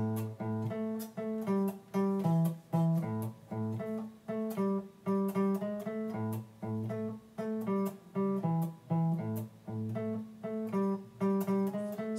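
Electric guitar playing a blues riff in A on the low strings, each note picked twice in a steady, even rhythm.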